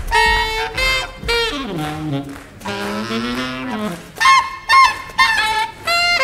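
Alto saxophone playing free-leaning jazz in short, broken phrases with bending and sliding notes, a few sharp loud accents about four to five seconds in.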